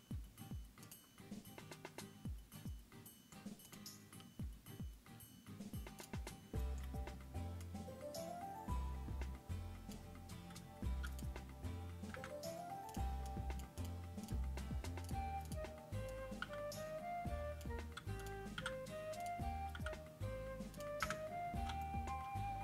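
Computer keyboard and mouse clicks for the first few seconds. Then background music, a bass line under a stepping melody, comes in about six seconds in and plays on.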